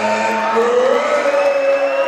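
A man's voice over a public-address system drawing out a long held call, its pitch rising about half a second in, as a ring announcer stretches out a boxer's name.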